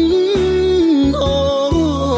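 A song: a singing voice holds one long note that drops lower about a second in, then moves to the next note, over a steady bass and backing accompaniment.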